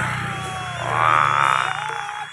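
A rough, croaking growl voiced for the dragon barongan, loudest about a second in after a short falling cry, over a steady low hum.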